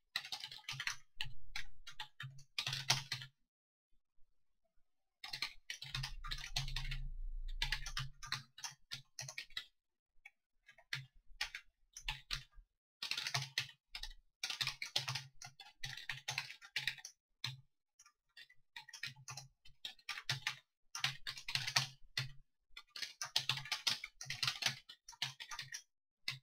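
Computer keyboard typing in runs of rapid keystrokes, with brief pauses between the runs.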